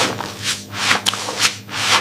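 Hands scrubbing soapy wet hair, a scratchy rubbing sound in about four rhythmic strokes.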